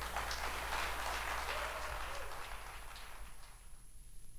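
Applause from a small audience, fading away over a few seconds, with a few faint voices in it.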